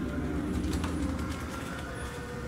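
A low steady hum of the room with the soft rustle of a picture book's page being turned about midway.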